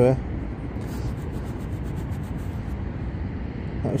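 A thumb rubbing soil off a small corroded token, with a few faint scratches in the first second and a half, over a steady hiss of rain.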